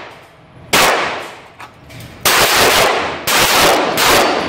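.45 pistol shots fired on an indoor range: three shots, the first about a second in and the next two about a second apart, each ringing on in the room's echo.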